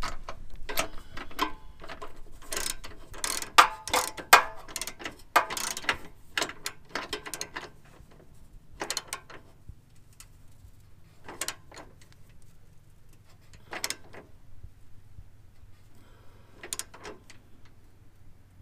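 Socket ratchet clicking in quick runs of strokes as the trailer hitch's mounting bolts are tightened, busy for the first half, then in a few short bursts.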